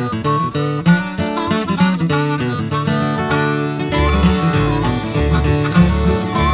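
Acoustic bluegrass-country band playing an instrumental intro led by a picked acoustic guitar. About four seconds in, the bass comes in strongly under the guitar.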